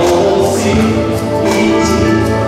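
Dance music playing loudly, with singing voices over a steady beat.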